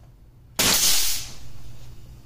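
Paslode finish nailer firing a nail into wood trim: one sudden, loud hissing burst about half a second in, fading away over the next second.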